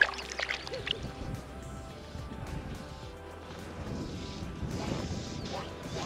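Soft background music with long held tones, over a faint low rumble of outdoor noise.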